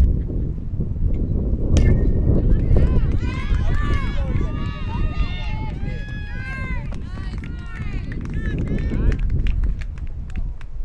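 A softball bat strikes the ball about two seconds in: a sharp crack with a brief ring. Several high-pitched young voices then shout and cheer for several seconds while the batter runs to first base.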